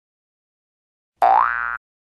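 Cartoon boing sound effect about a second in: one short springy tone that rises in pitch and then holds, lasting about half a second.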